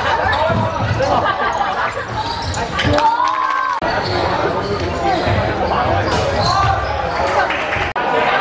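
Basketball dribbled on a hardwood gym floor, with players and spectators shouting in a large echoing sports hall. A brief steady tone sounds about three seconds in.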